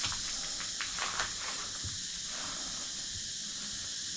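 Footsteps crunching on dry leaves and broken wooden debris, with a handful of short crackles in the first two seconds, over a steady high-pitched hiss.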